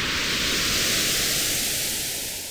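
Whoosh sound effect for an animated title: a rush of hiss-like noise that swells to its peak about the middle and then fades, with a slow rising sweep through it.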